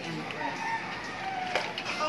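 A drawn-out animal call in the background, its pitch dropping partway through, with a few sharp clicks of plastic cups being handled about one and a half seconds in.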